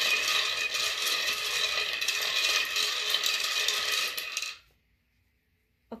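Rune stones being shaken and clattering together, a dense run of rapid clicks with a slight ringing, stopping suddenly near the end.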